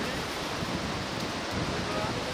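Steady rushing outdoor noise at an even level, with no distinct event.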